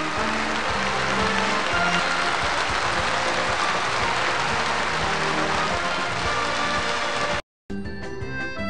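Audience applause, a dense even wash, over music, cut off abruptly near the end; after a brief gap, a different tune starts.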